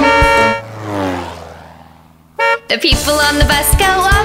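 A cartoon bus horn sound effect: a held honk that slides down in pitch and fades away over about two seconds, then a short toot about two and a half seconds in. Bouncy children's music comes back in near the end.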